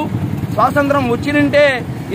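A man speaking loudly and emphatically in short phrases, over a steady hum of street traffic.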